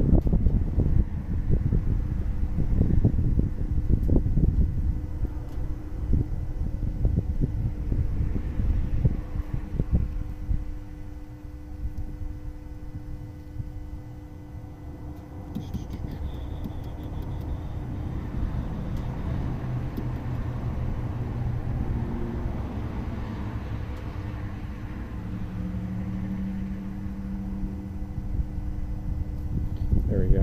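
Wind rumbling on the microphone outdoors, uneven and strongest in the first half, over a faint steady low hum.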